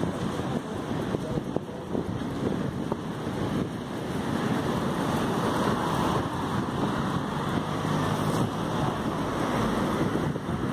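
Wind rushing over the microphone while riding a bicycle, a steady low rumbling noise that grows a little louder about halfway through.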